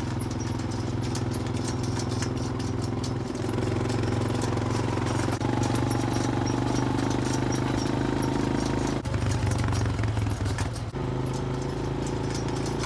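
Honda Foreman 450 S ATV's single-cylinder engine running under way while towing a trailed boom sprayer. The engine note shifts a few times, about three, five and nine seconds in, with small clicks and rattles throughout.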